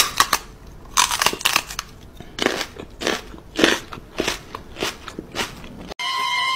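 A cat chewing, with loud crunches close to the microphone, roughly one every half second to second.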